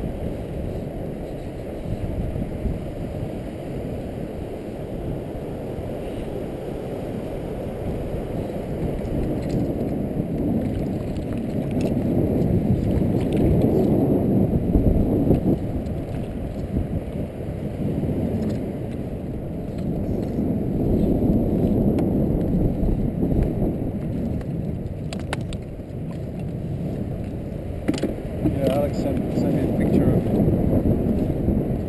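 Wind buffeting a boat-mounted action camera's microphone: a steady low rumble that swells twice, strongest about halfway through, with a few faint clicks near the end.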